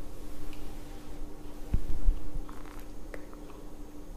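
Quiet mouth sounds of a man sipping whiskey from a nosing glass and swallowing, with a soft low thump near the middle. A faint steady hum runs underneath.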